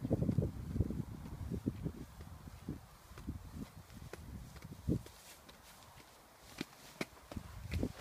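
Footsteps on an asphalt path, irregular low thuds that die away about five seconds in, followed by a few sharp clicks and knocks near the end.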